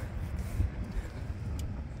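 Low, uneven background rumble with a few faint clicks.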